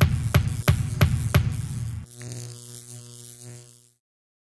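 Short logo sting: a pounding beat of about three hits a second for two seconds, then a low held tone that fades out.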